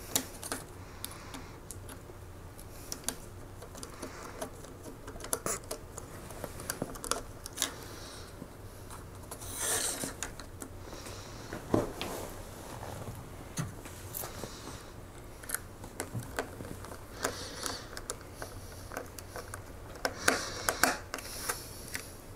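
Small clicks, ticks and scrapes of a precision screwdriver turning small screws into plastic model-kit parts, with an occasional sharp tap of a part or tool on the table.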